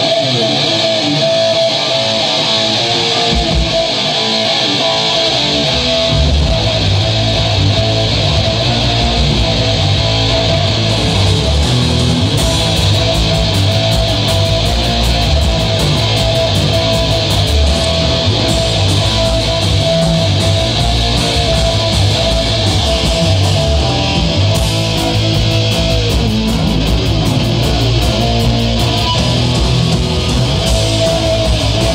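Live rock band playing amplified and loud, led by distorted electric guitar with bass guitar underneath. The guitar opens nearly alone and the low end of the bass comes in about four seconds in.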